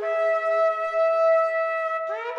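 Shofar (ram's horn) sounding one long, steady blast, a tekiah, that starts with a quick upward scoop in pitch. Near the end it gives way to the next blast, which also slides up at its start.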